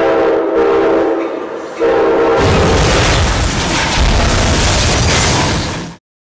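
Sound effect of a train horn sounding a steady multi-note chord, then, about two and a half seconds in, the loud, long noise of a train crash taking over and fading out at the end.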